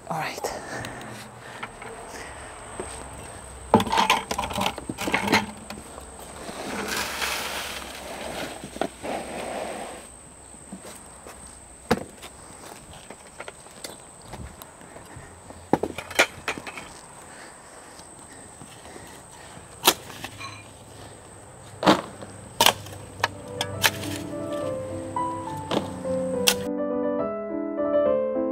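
Steel shovel digging into hard, compacted soil under patio bricks, with sharp knocks of the blade striking and prying, and gritty scraping of soil and sand. Light background music comes in near the end.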